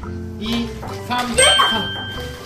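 A bright bell-like ding about one and a half seconds in, ringing on as a steady tone, over background music and voices.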